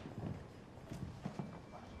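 A series of soft, uneven low knocks, about five or six in two seconds.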